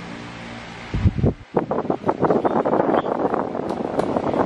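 Crackling, rustling handling noise on the microphone, starting with a thump about a second in and running dense and uneven after it, as the recording device moves close over the bedding.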